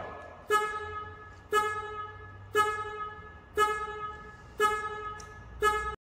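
Factory Five GTM's electronic warning chime sounding over and over, about once a second, each tone starting sharply and fading. This is the noise the car makes once its owner walks away from it with the door open. A faint low hum runs underneath.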